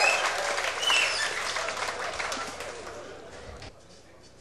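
Audience applauding in a large hall, the clapping dying away steadily over a few seconds.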